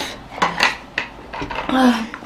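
Several short clinks and knocks of tableware handled on a table, with a brief voice near the end.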